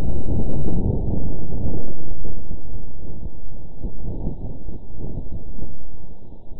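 NASA InSight lander's recording of Martian wind: low rumbling vibrations from gusts passing over the lander's solar panels, shifted up about six octaves so that human ears can hear it. The noisy rumble swells and eases.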